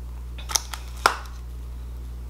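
A few light clicks from a Scentsy wax bar's plastic clamshell packaging being handled: a small cluster about half a second in and one sharper click just after a second, over a steady low hum.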